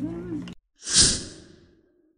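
A single long breathy sigh, starting suddenly about a second in and fading away over the next second, after the room sound cuts off abruptly.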